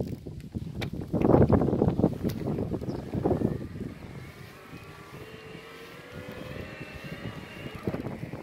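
Wind gusting on the microphone of a moving electric fat bike, loudest in the first half. From about halfway, the bike's electric motor whines steadily, its several tones rising slowly as the bike gathers speed.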